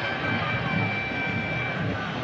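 Stadium crowd noise from the stands at a football match, a steady roar. A thin steady high tone carries over it until just before the end.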